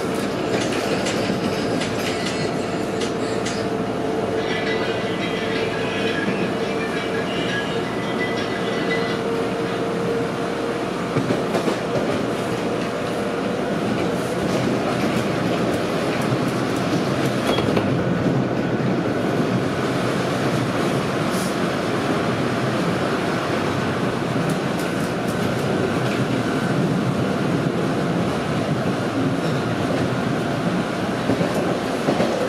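Bombardier T1 subway car running at speed, heard from inside the car: a continuous rumble of wheels on rail. A steady whine runs through the first ten seconds or so and then fades, and a few sharp clicks come about eleven seconds in.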